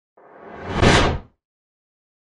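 A whoosh sound effect that swells over about a second, reaches its loudest near the end, then cuts off sharply.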